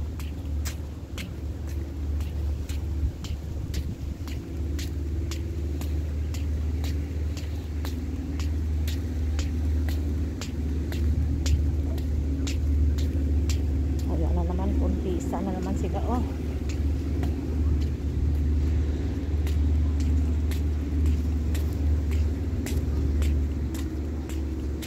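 Steady low rumble of wind buffeting a phone's microphone outdoors, with frequent faint crackling clicks. A distant voice is heard briefly a little past the middle.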